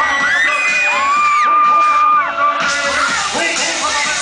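Loud live concert music through the PA, with crowd screaming in long, high, held cries that rise and then fall away.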